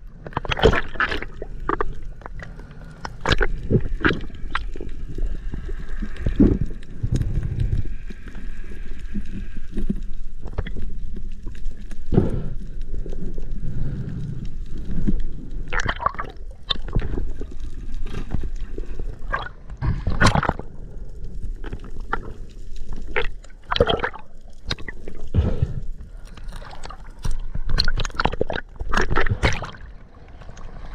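Water gurgling and sloshing around the camera, broken by many irregular knocks and splashes.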